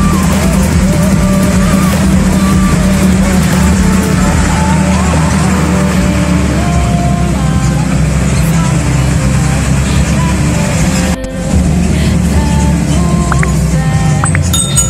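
Engine of a moving vehicle running steadily, heard from inside the ride, with music and voices mixed over it; the sound breaks off briefly about eleven seconds in.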